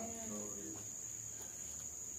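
Quiet room tone with a steady high-pitched whine that holds unchanged throughout; a man's spoken "Amen" trails off in the first half-second.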